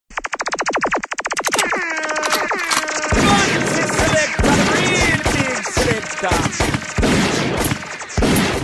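Selector's mix intro: a very rapid machine-gun-like rattle of sound effects, then two falling laser-zap sounds. About three seconds in a beat starts, with kick drums about twice a second under a processed voice drop.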